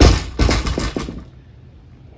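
Loaded barbell with yellow Rogue bumper plates dropped from overhead onto a rubber mat. A hard landing is followed by a quick run of smaller bounces and rattles that die away within about a second.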